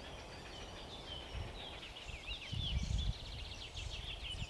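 A small songbird singing: a quick run of high chirping notes that starts about a second in, over faint outdoor background. A brief low rumble comes near the middle.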